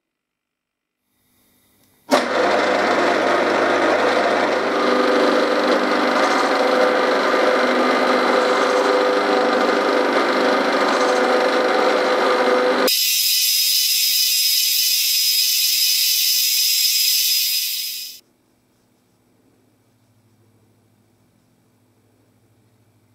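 Milling machine spindle driving a shop-made skiving cutter through an acetal ring blank, cutting internal helical gear teeth: a loud, steady machining noise that starts about two seconds in. Near the end it changes to a thinner, higher sound for a few seconds, then cuts off, leaving a faint low hum.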